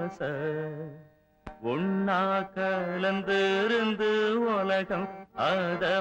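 Tamil film song: a singer holding a slow, ornamented melodic line with wavering pitch, breaking off briefly about a second in before the phrase resumes.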